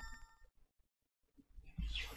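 Electronic chime, several bell-like tones together, fading out within the first half second; then quiet, with a short soft noise near the end.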